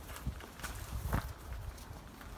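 Hand polishing of an aluminium truck wheel: a gloved hand rubbing a cloth pad over the rim, giving a few irregular soft knocks and scuffs, the loudest a little past one second in.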